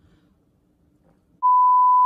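Near silence, then about one and a half seconds in, a loud, steady, high-pitched single-tone test bleep starts: the tone that goes with TV colour bars, edited into the soundtrack.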